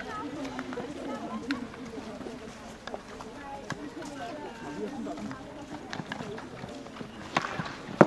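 Field hockey play on an artificial turf pitch: distant players' voices calling across the field, with several sharp cracks of hockey sticks hitting the ball, the loudest a little before the end.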